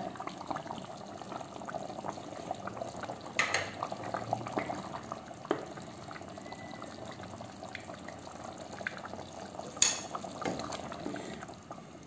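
Tomato sauce with green olives simmering and bubbling steadily in a nonstick pan, while a metal spoon and a plastic spatula clink and scrape in the pan as chicken pieces are lifted out. A few sharper knocks stand out, about three and a half seconds in and again near ten seconds.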